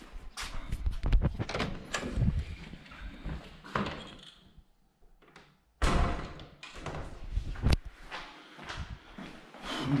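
A house door being opened and closed, with knocks, clicks and handling noise close to the microphone; it goes quiet briefly around the middle, then starts again abruptly, with a sharp knock a couple of seconds before the end.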